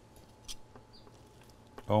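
A carving knife slicing quietly into tender, marinated pork on a vertical spit, steadied with metal tongs, with a soft click about half a second in.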